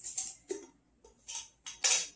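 A screw-top glass jar being opened by hand: several short scraping clicks as the lid is twisted, the loudest near the end.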